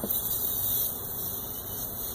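Helium hissing out of a balloon's neck as it is breathed in, a steady high hiss that eases off towards the end.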